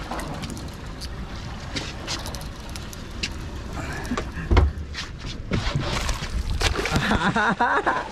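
Wind and water noise on an open fishing boat at sea, with scattered short clicks and knocks and one heavy thump about halfway through.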